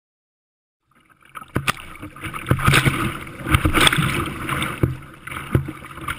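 Sea kayak being paddled through choppy water: after about a second of silence, paddle blades splash and water sloshes and slaps around the hull in irregular surges.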